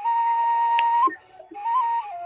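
Flute music: a single melody line holding one long high note, then a short break and a few shorter notes that step up and back down.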